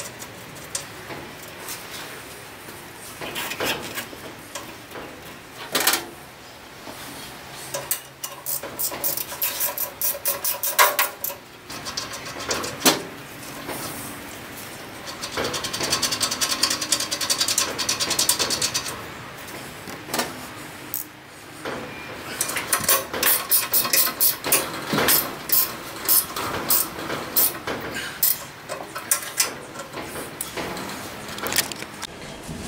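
Steel studs being threaded and tightened into a steel bench frame: metallic clicks, scrapes and handling knocks, with two runs of rapid, evenly spaced clicking as the studs are turned.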